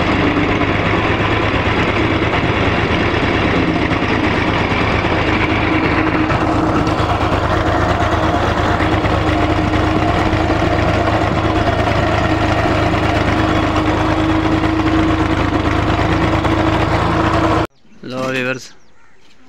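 Farm tractor's diesel engine running steadily under way, a constant low drone. It cuts off abruptly near the end.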